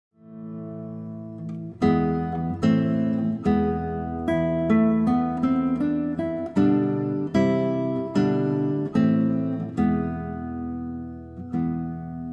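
Background music played on acoustic guitar: a soft chord rings for the first two seconds, then chords are strummed in a steady rhythm, one about every second, each ringing out.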